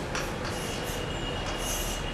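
Chalk scraping on a blackboard in short strokes, over a low steady rumble, with a thin high whine through most of it.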